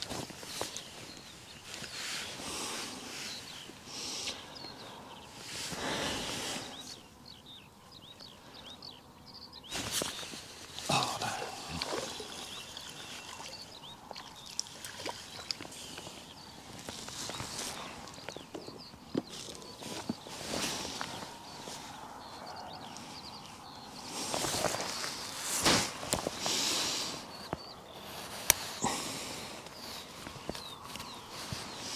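Irregular rustling and scuffing from a person moving on a grassy bank, with a few sharp clicks, over a steady outdoor background. The loudest bursts come about six seconds in, around ten seconds, and again about twenty-five seconds in.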